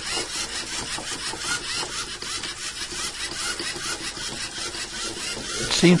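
LEGO Mindstorms EV3 robot's geared motors whirring as it drives and steers along the edge of a line, a steady rasping run.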